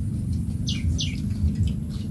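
Two short bird chirps, each falling quickly in pitch, about a second in, over a steady low rumble.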